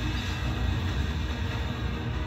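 Deep, steady rumbling roar of tornado winds hitting a grocery store at night, heard through a phone recording, with background music over it.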